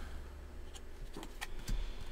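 Faint, scattered ticks and rustle of trading cards being flipped through by hand, over a low steady hum.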